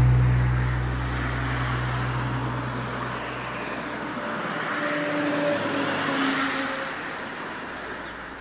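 Road traffic, a vehicle passing with a rush of noise that swells to a peak about six seconds in and then fades, while a low music drone dies away over the first few seconds.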